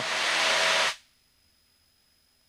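Steady hiss of an open headset-intercom microphone picking up the cockpit noise of a light aircraft. It cuts off sharply about a second in as the intercom's voice gate closes, leaving silence.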